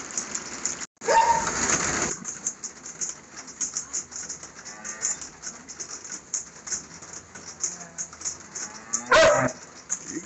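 Cattle mooing: a loud call rising in pitch about a second in, with another loud call near the end.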